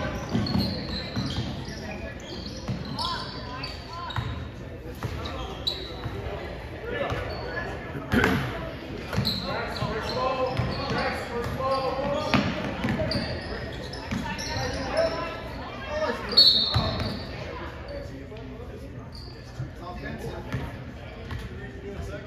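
Basketball game sounds in a large gymnasium: the ball bouncing on the hardwood court amid indistinct players' and spectators' voices. A few sharper knocks stand out, the loudest about sixteen seconds in.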